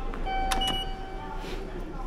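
Electronic beeps from automatic station ticket gates: a steady tone lasting about a second, with a short higher beep and a couple of clicks as a card is read.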